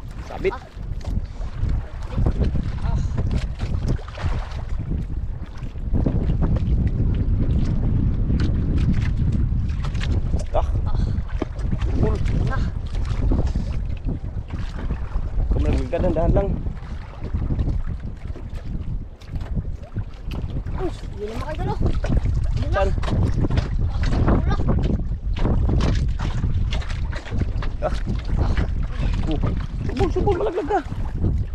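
Wind buffeting the microphone over choppy open sea: a steady low rumble that gets louder about six seconds in.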